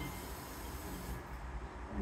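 Tap water running steadily from a sink faucet, filling a glass cruet.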